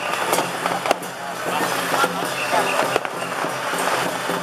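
Busy street-procession noise: scattered sharp cracks and bangs over the steady engine hum of a small truck passing slowly, with voices mixed in.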